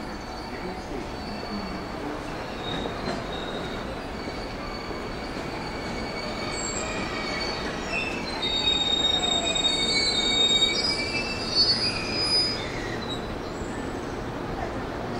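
JR West 223 series electric multiple unit, eight cars, running into the platform and braking to a stop. Steady rolling rumble, with high-pitched squealing that builds up in the second half and is loudest just before it halts, and a falling whine near the end.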